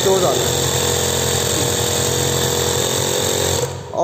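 Small electric air compressor running steadily with a constant hum, pressurising a diaphragm pressure gauge. It is switched off and stops abruptly near the end.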